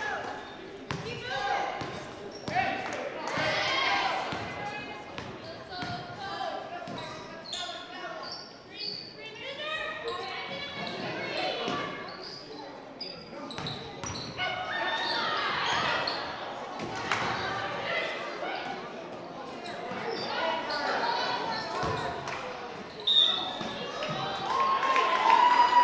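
A basketball bouncing on a hardwood gym floor again and again during play, under the steady talk of spectators and players in a large gym.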